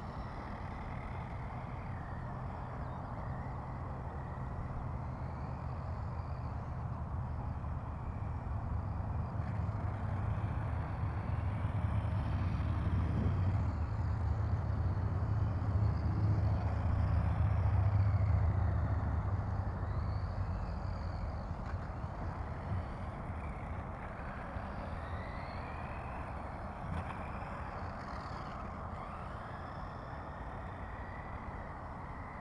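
Electric motor of a radio-controlled car whining, its pitch rising and falling again and again as the throttle changes. Under it a steady low rumble swells in the middle and then eases off.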